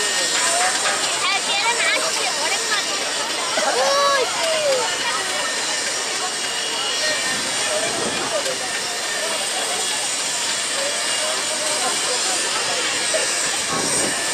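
Diesel locomotive engine running as it slowly pulls a passenger train along, a steady noisy din. People's voices, chatter and calls sound over it throughout, with one louder call about four seconds in.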